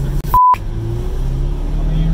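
A short censor bleep, a pure steady tone, about half a second in, over the cabin sound of a twin-turbo C8 Corvette's 6.2-litre V8 running at low revs, its pitch starting to climb near the end.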